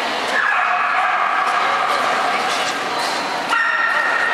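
Alaskan Malamute whining in long drawn-out tones, one falling in pitch about half a second in and a fresh, higher one starting near the end.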